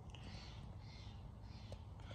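Quiet outdoor background: a low steady hum, with three or four faint, soft high-pitched sounds spread through it.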